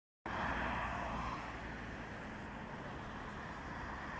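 Road traffic on a city boulevard: a steady rush of car engines and tyres on asphalt as cars drive past, a little louder in the first second or so.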